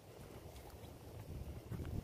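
Faint low rumble of wind buffeting the microphone, growing a little stronger in the second half.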